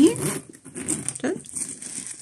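A metal zipper on a coated-canvas handbag is drawn open, then tissue-paper packing inside rustles as the bag is spread open; the sounds are faint and light.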